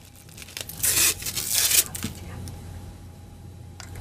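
Plastic packaging crinkling and rustling in a burst of about a second, followed by light clicks and handling of plastic parts.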